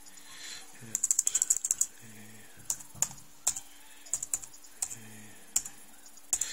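Keystrokes on a computer keyboard as a password is typed: a quick run of about a dozen key presses about a second in, then single, spaced-out key presses.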